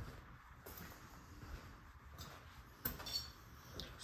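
Quiet room tone with a few soft footsteps and taps as someone walks with the camera, the clearest a short tap a little before three seconds in.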